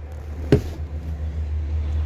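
A single sharp knock about half a second in as the rear seat of a Ram 2500 crew cab is pushed into its latch, over a steady low rumble.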